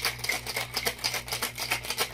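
Ice cubes rattling inside a metal cocktail shaker shaken hard by hand, a quick, even rhythm of clattering strokes.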